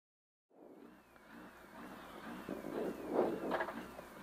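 Peugeot 106 N2 rally car's engine running at the stage start, heard from inside the cabin. The sound comes in about half a second in and grows louder, with short louder surges near the end.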